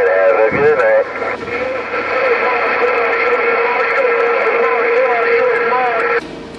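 President HR2510 radio's speaker carrying faint, garbled voices of distant stations over steady static, the sound narrow and tinny, with a few steady whistling tones underneath.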